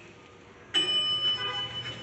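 Elevator arrival chime: a single bell-like ring with several overtones starts about three-quarters of a second in and fades away.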